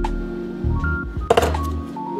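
Background music with sustained notes over a low bass, broken by a sharp knock right at the start and a few more knocks about a second and a half in.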